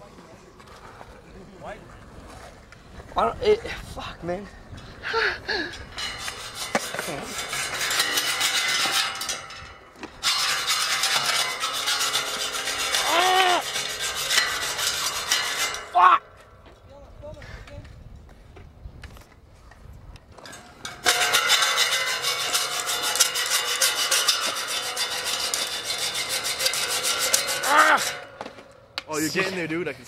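Hacksaw cutting through a welded steel fence bar with fast back-and-forth strokes, in two long bouts with a pause of several seconds between them.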